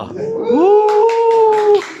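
A small hand-held toy whistle blown by mouth: one long steady note that slides up in pitch at the start and is held for over a second.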